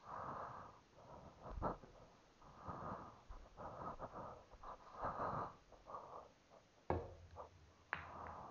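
Soft, close breathing picked up by a body-worn camera, a series of breaths about every second. Two sharp clicks about a second apart come near the end.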